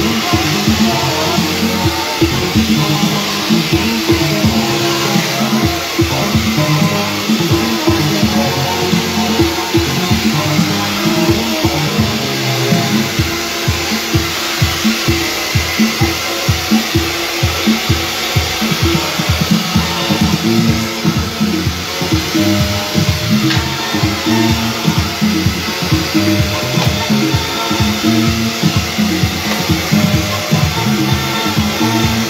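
Music with a steady beat plays loudly over the steady blowing of a hand-held hair dryer being used to blow-dry hair with a brush.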